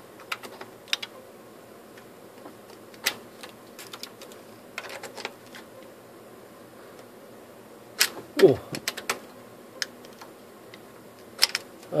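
USB stick being pushed into and pulled out of USB-A ports on a metal PC slot plate bracket: scattered sharp plastic-and-metal clicks, with the loudest click about eight seconds in.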